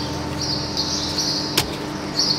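Birds chirping in a high, repeated trill over a steady low hum, with one sharp click about one and a half seconds in.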